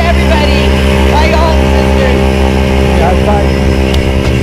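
A propeller aircraft's engine running steadily, with people's voices over it.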